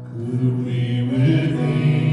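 Church worship music: voices singing slow, held notes over a steady low tone.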